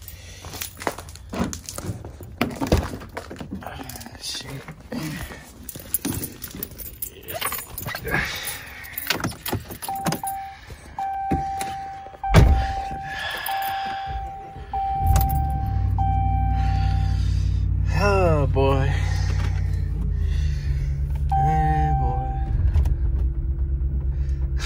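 Keys jangling and clicks from handling the door of a Ram pickup truck, then the cab's warning chime sounding in short beeps and a door thudding shut about halfway through. A few seconds later the engine starts from cold and settles into a steady idle through the end.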